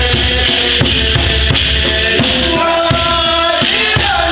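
Rwandan traditional dance music: group singing over a steady drumbeat, the voices holding long notes in the second half.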